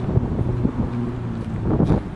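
Wind buffeting the microphone outdoors, an uneven low rumble with a faint steady hum underneath.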